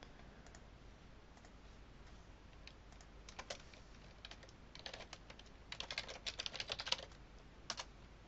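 Faint typing on a computer keyboard: a few scattered clicks at first, then a quick run of keystrokes for about two seconds past the middle as two words are typed, and a last pair of clicks near the end.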